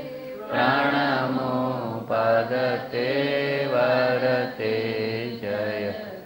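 Devotional chant sung in long, held notes, with short breaks between phrases.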